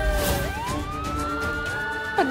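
Police siren wailing: one tone dips in pitch, then rises slowly and holds high, over background music.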